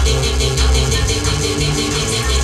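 Loud electronic music from a live DJ set on turntables and a pad controller: a deep bass line held in long notes under a fast, even ticking beat.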